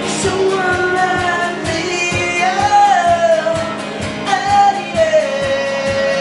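A man singing long held notes over a steadily strummed acoustic guitar, performed live.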